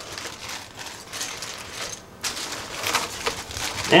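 Clear plastic zip bags of small accessories crinkling and rustling as they are lifted out of a cardboard box and set down on a table, with small irregular crackles throughout.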